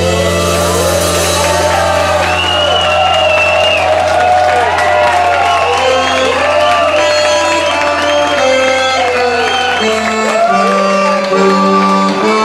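Live band with a bayan (button accordion) holding a long, steady low chord, then moving to new notes near the end, while shouts and whoops from the crowd rise and fall over it.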